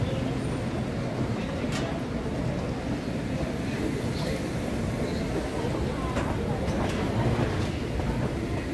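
Underground train station ambience: a steady low rumble with faint distant voices.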